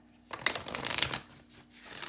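A deck of cards shuffled by hand: a dense papery rustle starting about a third of a second in and lasting most of a second, then a second, softer rustle near the end.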